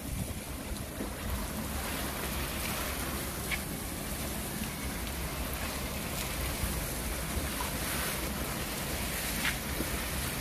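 Water spraying from a garden hose over rows of potted plants: a steady hiss of spray that grows fuller about two seconds in.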